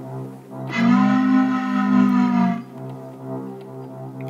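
A deep locomotive whistle sound effect: one long blast held about two seconds, starting near the first second, over a steady low musical drone.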